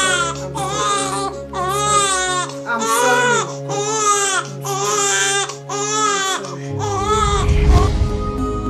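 An infant crying in repeated wails, about one a second, over a background music score of sustained chords. Near the end the wails stop and a deep swell rises in the music.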